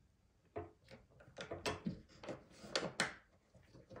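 Metal parts of a dismantled ERA multi-point door lock centre case clicking and scraping as the part worked by the euro cylinder's cam is pushed down into the locked position. It is a string of about eight short clicks and scrapes, starting about half a second in.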